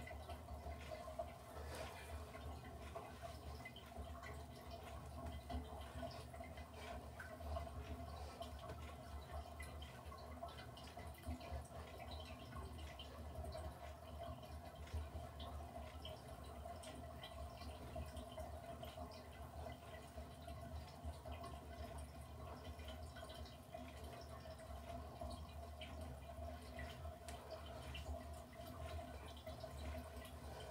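Faint rustling and scrubbing of a cotton towel rubbed over wet hair, with many small soft ticks, over a steady low hum.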